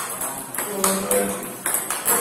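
Table tennis balls clicking sharply off paddles and the table during a forehand multiball drill, a few hits spaced roughly half a second to a second apart.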